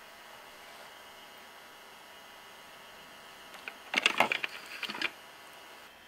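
Faint room hiss, then, about four seconds in, a quick run of clicks and light clatter, like hard objects being handled, lasting about a second.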